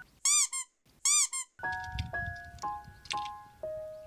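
Two identical short, high squeaky sound effects, each rising and then falling in pitch, cut into light background music with bell-like notes. The music resumes about a second and a half in.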